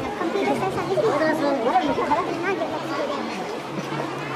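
Chatter of passers-by in a crowded street, several voices talking at once, loudest in the middle.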